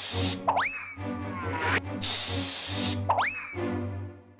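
Cartoon aerosol spray hissing in two short bursts, each followed at once by a quick rising whistle sweep, over background music with steady low notes.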